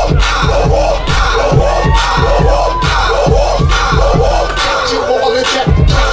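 Marching band drums playing a steady beat, about two hits a second, under a crowd of voices shouting and chanting, with a few held pitched notes over the top.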